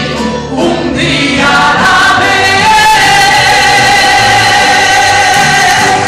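A woman singing a gospel song into a handheld microphone, amplified, over instrumental accompaniment. She holds one long note through the second half.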